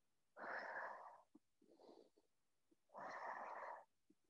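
A person's heavy exercise breathing: two long, forceful exhales about two and a half seconds apart, with a fainter breath between them, in time with an abdominal curl-and-rotate movement.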